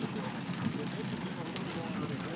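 Inside a car's cabin in steady rain: an even hiss of the moving car and rain on the glass, with a quiet voice faintly in the background and a single brief click about a second and a half in.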